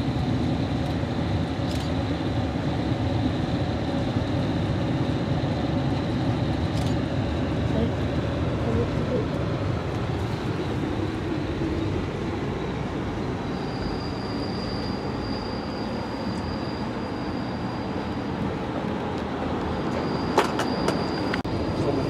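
Passenger train running along the track, heard from inside a Skyline dome car: a steady rumble of wheels and car body, with a thin high-pitched whine that comes and goes in the second half and a few sharp clicks near the end.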